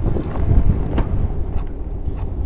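Wind buffeting the microphone of a handlebar-mounted camera, with the low rumble and knocks of a bicycle rolling over a concrete driveway; one sharper knock about a second in.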